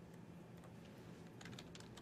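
Near silence with a few faint clicks of a computer keyboard, clustered about one and a half seconds in.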